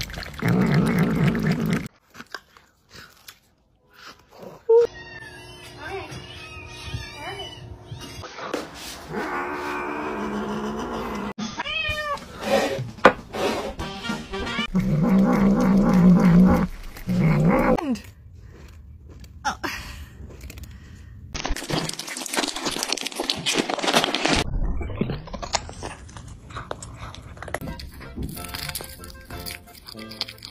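Domestic cats meowing and yowling over food, the sound changing abruptly every few seconds, with music in parts.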